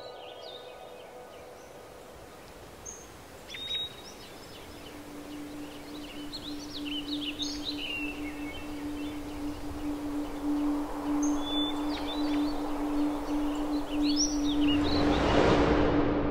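Birds chirping and calling, with a single sustained low musical note coming in about five seconds in and a swelling rise of sound building near the end.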